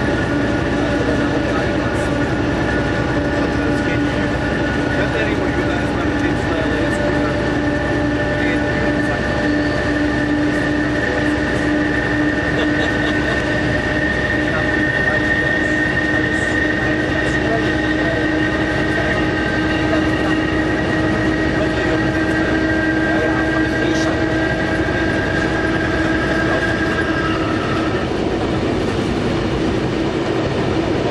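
Nohab diesel locomotive heard from its cab while pulling a heavy freight train: the engine runs steadily with several steady whining tones over the rumble of the wheels on the rails. Some of the higher tones drop out near the end.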